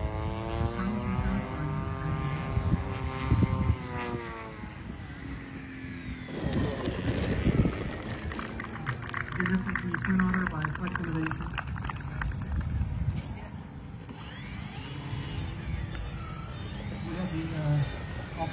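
Twin electric motors and propellers of an RC Twin Otter model airplane in flight, the whine rising and then falling in pitch over the first few seconds as it passes. After that comes a stretch of crackling noise with background voices.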